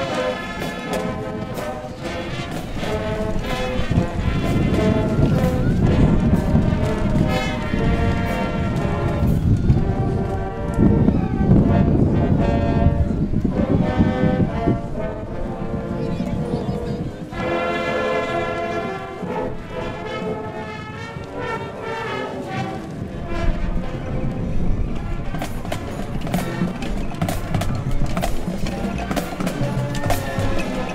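High school marching band playing as it marches: brass, saxophones and clarinets over snare drums. The drum strokes stand out more sharply near the end.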